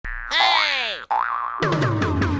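Cartoon sound effects for an animated title logo: a springy boing-like tone slides down in pitch and cuts off suddenly about halfway through, followed by a short wobbling tone. Then the electronic intro music comes in with a beat and bass near the end.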